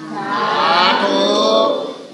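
Many voices sounding together in one loud, drawn-out call lasting about a second and a half.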